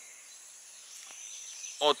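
Quiet outdoor background noise in a pause between words, with a faint steady high-pitched whine running through it.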